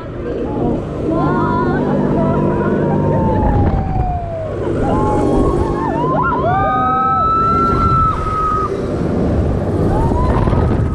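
Riders screaming and whooping on a spinning Mondial Turbine thrill ride: a long falling scream, then short yelps and a long held scream toward the end, over a low steady drone.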